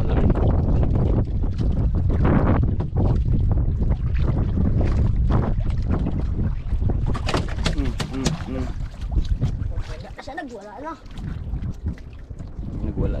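Strong wind buffeting the microphone on a small outrigger boat at sea, a heavy low rumble that eases after about seven seconds. A few sharp clicks follow, and a brief voice is heard near the end.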